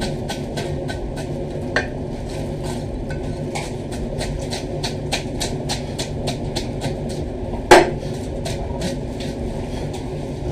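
A large knife scraping the scales off a big whole fish in rapid, even strokes, about four a second, over a steady background hum. One loud knock about eight seconds in, with a smaller one near two seconds.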